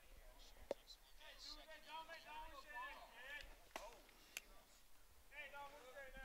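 Faint, distant voices of ballplayers calling out chatter across the field, with a few faint sharp clicks.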